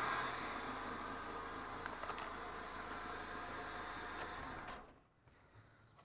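Fiat Mobi engine idling steadily, with a few light clicks, then cutting off abruptly to dead silence near the end.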